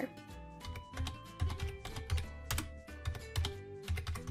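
Computer keyboard typing: a quick, irregular run of key clicks as digits are entered, over background music.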